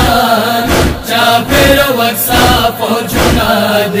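A man chanting a Pashto noha, a Shia lament, in a melodic recitation over a steady deep beat about twice a second.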